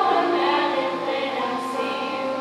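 Middle school mixed chorus, boys' and girls' voices together, singing long held notes.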